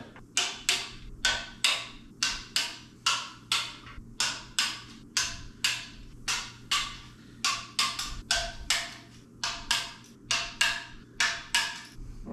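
Ratchet wrench with a 10 mm socket clicking in quick, uneven strokes, about two to three sharp clicks a second, as the oil pan bolts on an LS engine are run down and tightened.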